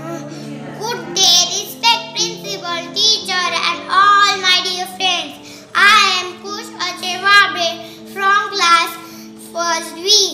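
A young boy's high-pitched voice over background music of long held notes.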